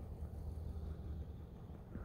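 Quiet outdoor background: a faint, uneven low rumble with no distinct events.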